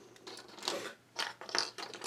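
Plastic building blocks clicking and tapping as pieces are pressed together by hand: a few short clicks, the loudest in the middle and a little after.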